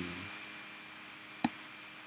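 A steady faint hiss with one sharp, short click about one and a half seconds in.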